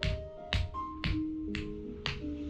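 Soft spa music with slow, bell-like melodic notes. Sharp percussive slaps land about twice a second, from a massage therapist's hands striking the client's body with the palms joined.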